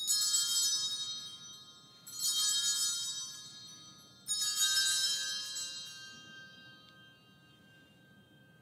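Altar bells rung three times, about two seconds apart, each ring a bright jangle of small bells that fades away slowly. They mark the elevation of the chalice after the consecration.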